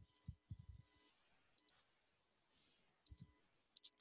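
Near silence broken by a few faint computer mouse clicks and soft thumps.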